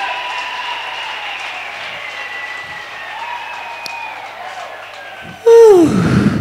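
Church congregation applauding, the clapping slowly dying down, with a few drawn-out voices over it. Near the end comes a single loud shout with a falling pitch.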